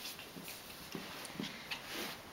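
A Prague Ratter puppy play-wrestling with a person's hands, making several short, soft vocal sounds with light scuffling.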